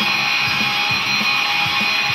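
Electric guitar played through effects pedals and a multi-effects unit: rock riffing, with a steady run of picked low notes under a sustained, dense upper sound.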